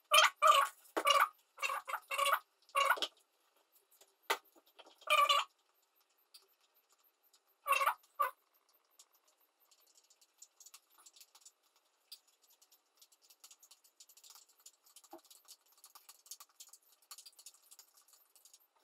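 Metal utensil clinking and scraping in a small bowl: a quick run of strokes for about three seconds, a few separate strokes after, then only faint light tapping.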